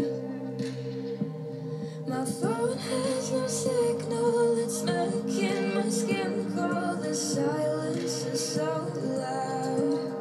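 Pop song playing: a female voice sings over a steady instrumental backing, with the singing coming in about two seconds in.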